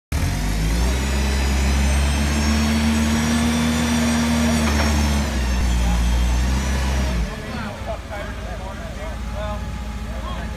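Forklift engine running at raised revs with a high whine, its pitch climbing in the first second and easing off about five seconds in. Then it drops back much quieter a little after seven seconds.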